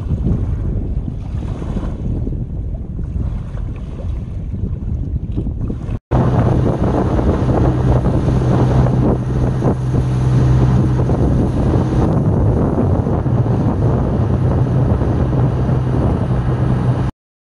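Wind buffeting the microphone over open sea. From about six seconds in, a small boat's engine hums steadily under heavy wind noise as the boat runs across the water to a floating fishing platform.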